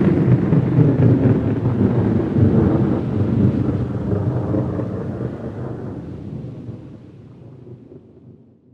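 A deep, noisy rumble with no tune in it, fading out steadily over several seconds.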